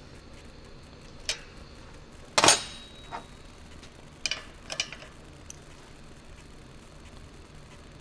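A few scattered metal-on-metal clicks and clinks as hand tools (wrench, screwdriver, feeler gauge) work the rocker-arm adjusting screw and lock nut while the valve clearance is set. The loudest is a sharp clink with a brief ring about two and a half seconds in.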